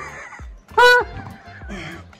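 Background music with a single short, loud honk about a second in, one steady flat-pitched note.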